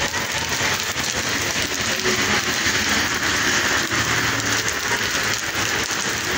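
Heavy rain falling steadily onto a wet street, an even hiss throughout.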